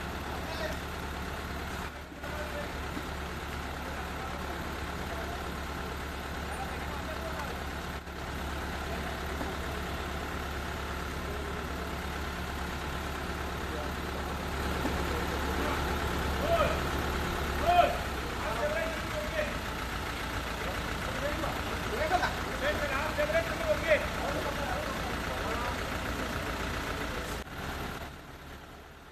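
Mobile crane's engine running steadily. In the second half, people's voices are heard, with a few loud shouts, and the engine's low hum drops away about eighteen seconds in.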